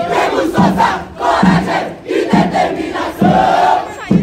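A group of young marching-band members shouting a chant together in loud, rhythmic phrases of a second or so each. The instruments are silent.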